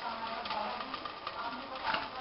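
Faint voices in the background with no clear words, over a low steady room noise.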